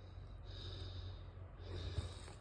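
Faint low rumble and rustle of a handheld phone being carried through leafy woods, with no distinct footsteps or other events standing out.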